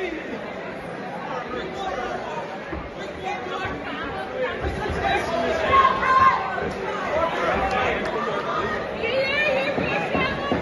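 Crowd of spectators around a boxing ring chattering and calling out in a large hall, many voices overlapping.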